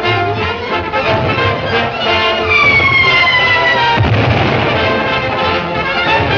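Orchestral cartoon score with brass and strings. Midway a whistle falls slowly in pitch for about a second and a half, ending in a loud blast about four seconds in.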